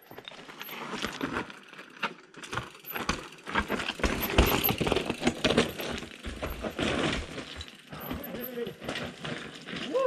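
Mountain bike tyres rolling over loose rocks and gravel on a steep, stony descent: an irregular clatter and crunch of stones, with the bike rattling over the bumps.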